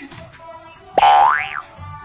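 Cartoon 'boing' sound effect about a second in: a sudden loud twang whose pitch slides upward for about half a second, over quiet background music.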